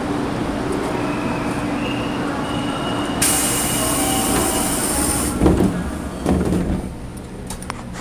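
A JR Kyushu 415-series electric train standing at the platform with a steady equipment hum. About three seconds in, a loud hiss of compressed air runs for about two seconds, followed by two heavy thuds as the sliding doors close before departure.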